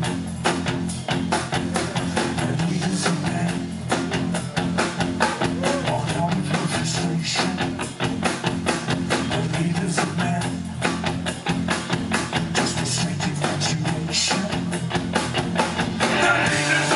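Live rock band playing an instrumental passage: drum kit keeping a fast, steady beat under bass and electric guitar, heard from within the audience.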